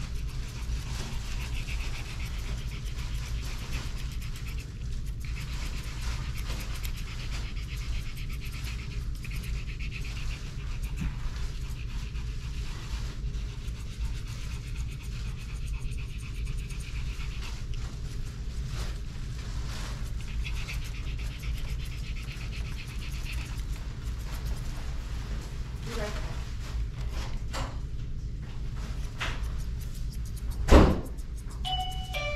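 A Pomeranian panting steadily over a steady low hum.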